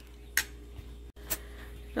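A metal spoon lightly clicking against a foil-lined aluminium pan while seasoning meat, twice, about a second apart, over a low steady hum.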